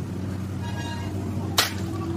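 A single sharp crack about one and a half seconds in, over the steady low hum of an engine running.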